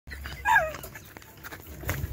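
A short, high yelp that slides down in pitch, with a few faint knocks after it.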